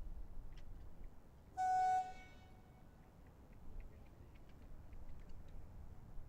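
An electronic horn sounds one short, steady, mid-pitched blast of about half a second, typical of the signal that starts an archer's shooting time in alternate shooting.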